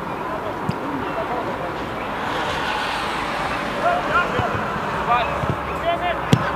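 Open-air football match ambience: scattered shouts from players across the pitch over a steady background rush that swells in the middle. There is a single sharp knock less than a second in.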